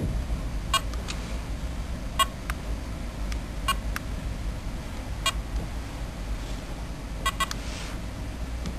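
Handheld barcode scanner (SUMLUNG MS30) giving a short beep each time it reads a medicine barcode, about every second and a half, with a quick double beep near the end. Faint clicks fall between the beeps over a steady low hum.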